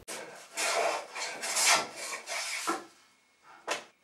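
A hand woodworking tool scraping across wood in a run of quick rasping strokes, then a pause and one short stroke near the end.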